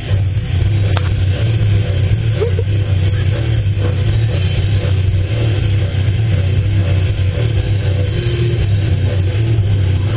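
A loud, steady low drone that holds unbroken throughout, with faint musical tones above it and a single click about a second in.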